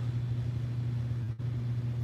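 A steady low hum, with a brief dropout a little past halfway.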